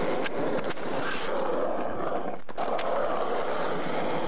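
Skateboard wheels rolling steadily over asphalt, with a few light clicks along the way.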